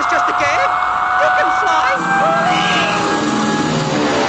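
Cartoon film soundtrack: a high-pitched cartoon mouse voice shouting over a steady, high whistling rush as the elephant plunges, with a lower held sound joining about halfway through.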